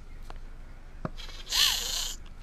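Handling noise from the camera being picked up and turned: a couple of small clicks, then a loud, hissy scrape and rub about a second and a half in that lasts under a second.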